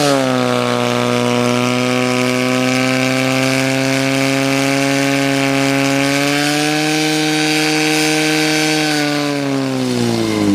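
Portable fire pump's small petrol engine running at high revs with a steady note while it pumps water out through the attack hoses. The pitch rises a little about two-thirds of the way through.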